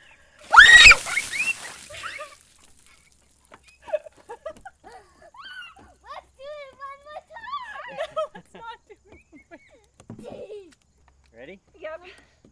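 Bucket of ice water splashing down over a person's head about half a second in, with a loud shriek at the cold; then laughing and high squeals.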